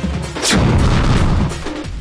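TV show logo sting: a deep boom hit about half a second in over a short burst of music, easing off near the end.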